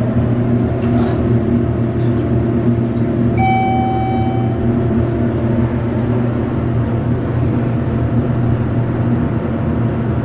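Schindler hydraulic elevator travelling up: the steady hum of its hydraulic pump and motor, heard from inside the car. A single clear chime-like tone rings once, a little over three seconds in.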